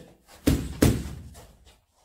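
Two sharp smacks about a third of a second apart, a boxing glove and a padded coaching stick striking each other during a parry-and-counter drill, each trailing off in a short room echo.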